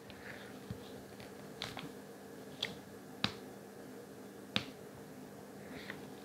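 About six short, sharp clicks, roughly a second apart, from fingers tapping and pressing a Samsung Galaxy S24-series phone's screen and side buttons, over a faint steady hum.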